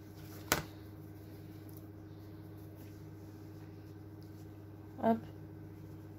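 A single sharp click about half a second in, over a steady low hum, with one short spoken word near the end.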